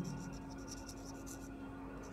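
Whiteboard marker writing on a whiteboard: faint, quick, high strokes as the letters go down, over a low steady hum.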